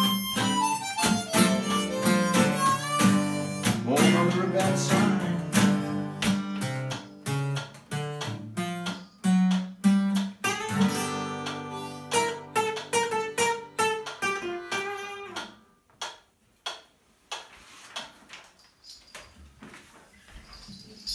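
Blues harmonica played over two guitars, an acoustic flat-top and an archtop, in a live acoustic blues trio. The playing stops about fifteen seconds in, leaving only a few scattered clicks.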